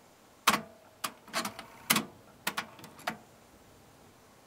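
Philips FC931 cassette deck's tape transport clicking and clunking through mode changes, about nine sharp clicks over some two and a half seconds, as the auto-bias calibration stops recording its test tones and rewinds the tape to play them back.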